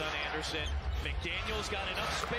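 A basketball being dribbled on a hardwood court, a run of short, sharp bounces heard through a TV broadcast, over the low rumble of the arena crowd and faint commentary.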